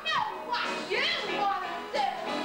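A teenage girl's voice through a hand microphone, swooping down and then up in pitch in a playful, exaggerated way, over the musical's backing music.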